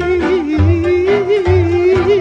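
Romanian folk party music: a single melody line with heavy vibrato and quick ornaments over bass notes that come about once a second.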